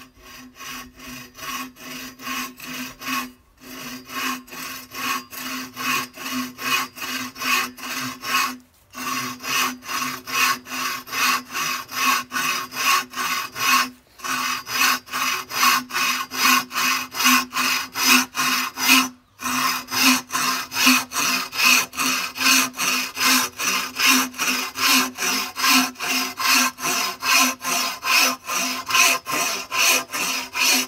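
A green-framed bow saw cutting through a thick, hollow sangmon bamboo culm (Dendrocalamus sericeus) in steady back-and-forth strokes, about two a second, with a steady ring under the strokes. The sawing stops briefly four times.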